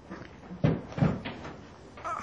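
Two dull thumps, a little under half a second apart.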